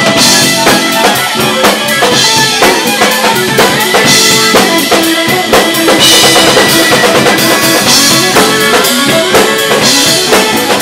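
Live rock band playing an instrumental passage with no vocals: a drum-kit beat under electric guitar, bass and bowed violin, with a cymbal-like high wash about every two seconds.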